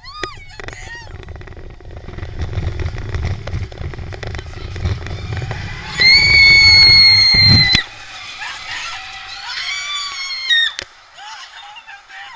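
Riders screaming on the Expedition Everest roller coaster over the low rumble of the train running on its track. Short screams at the start, then one long, very loud held scream about six seconds in that stops after nearly two seconds, with more cries near the end once the rumble has died away.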